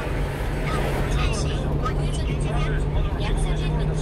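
Steady drone of a one-ton truck's engine and road noise heard inside the cab, with a voice talking underneath it at times.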